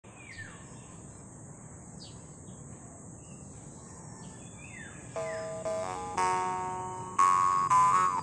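Birds chirping over a steady high insect drone. About five seconds in, a copper jaw harp starts: plucked roughly once a second, each pluck a ringing drone that fades, its bright overtone stepping between pitches as the mouth shapes it.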